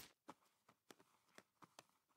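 Near silence, with a few faint, brief ticks.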